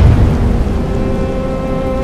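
Storm sound effect: a deep rumbling boom at the start, then a steady rush of wind-blown noise. Held music notes swell in underneath.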